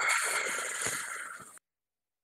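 Game-show board sound effect as two matched prize tiles clear away to uncover puzzle pieces: a hissing swish that fades and cuts off abruptly about a second and a half in.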